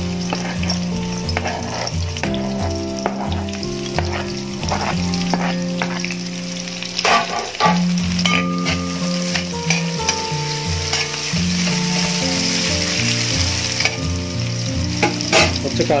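Sliced onions sizzling as they fry in hot oil in an aluminium pan, with a steady hiss and scattered clicks and scrapes, a cluster of them about halfway through.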